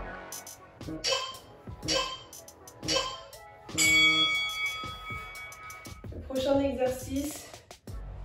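Background workout music thins out, and three short beeps about a second apart lead to a ringing chime about four seconds in. This is an interval timer counting down and signalling the end of an exercise set and the start of the rest period. A brief voice sound comes near the end.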